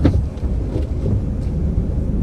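Audi S1's turbocharged four-cylinder engine running at low speed, heard inside the cabin as a steady low rumble as the car creeps into a muddy parking spot.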